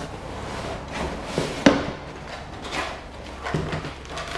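A small cardboard box being handled and opened, with rustling and scraping and a sharp knock about one and a half seconds in, and another softer knock near the end.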